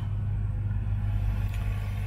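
Steady low rumble with a constant hum and no distinct events.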